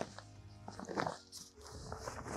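Tent fabric rustling in short bursts as it is pulled and handled over the trailer's bimini arches, under soft background music.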